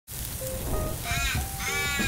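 Two caw-like bird calls, one about a second in and one near the end, after a few short single notes.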